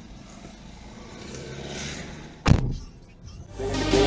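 Low steady traffic background, broken about halfway by a single loud thump. Electronic music with a beat swells in near the end.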